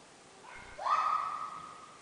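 A single high-pitched yell from a spectator. It swoops up quickly, is held for about a second, then fades.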